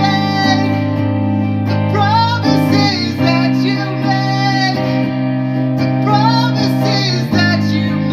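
A man singing in a high voice, holding long notes over strummed chords on a semi-hollow electric guitar.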